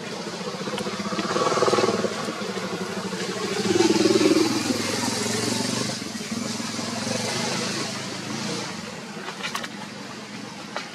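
A motor vehicle engine going past, swelling louder about two seconds in and again around four seconds, then slowly fading. A few faint clicks come near the end.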